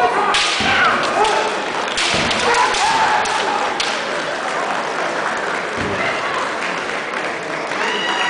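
Kendo sparring: sharp cracks of bamboo shinai and stamping feet on a wooden floor, several separate hits. Short shouted kiai come in among them.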